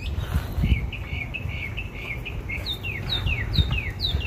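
A songbird calling: a quick run of short chattering notes, then a series of repeated down-slurred whistles, two or three a second, starting near the end.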